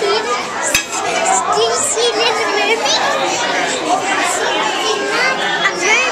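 Many people talking at once in a large room, children's voices among the adults', with a brief sharp click a little under a second in.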